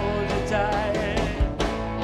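Live blues-rock band playing: electric guitars and drum kit, with a wavering sustained melody line over the band and a drum hit near the end.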